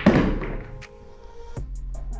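Pool balls striking on a pool table: a sharp clack at the start with a short rattling tail, then two lighter knocks, about a second in and near one and a half seconds. Background music plays underneath.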